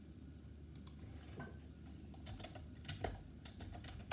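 Faint, irregular clicks and taps of typing on a computer keyboard, starting about a second in and growing denser, the loudest click near the end.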